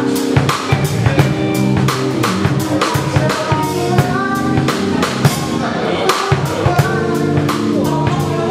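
Live band playing an instrumental passage: a drum kit with snare and bass drum hits drives the beat under bass, keys and a trumpet line.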